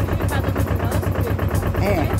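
A tractor engine running steadily with a fast, even low throb, with some talk over it.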